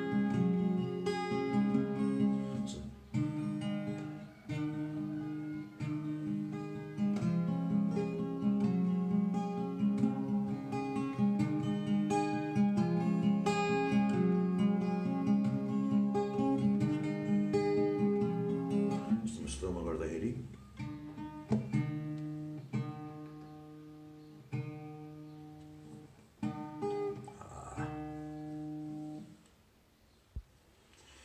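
Acoustic guitar with a capo at the sixth fret, played in a steady pattern of picked notes; about 19 seconds in the playing breaks off briefly, then goes on quieter, with fewer notes.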